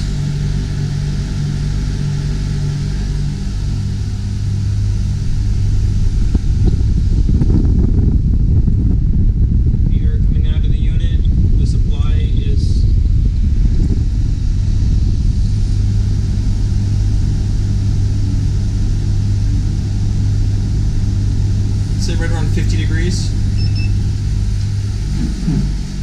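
Two marine air conditioners, a Dometic 12,000 BTU and a Mabru 4,200 BTU unit, running with a steady low hum. A louder rush of air builds in the middle while the microphone is close to a cabin air outlet.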